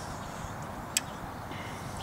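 Quiet outdoor background hiss with a single short, sharp click about a second in.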